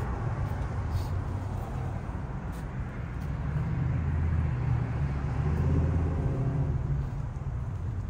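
Low rumble of a motor vehicle passing, growing louder through the middle and fading toward the end.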